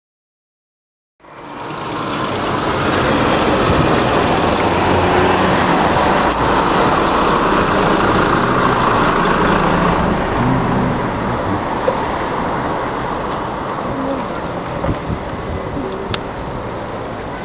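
Steady road traffic noise, with a city bus's engine running alongside, heard from a moving bicycle. It fades in about a second in and eases off slightly in the second half.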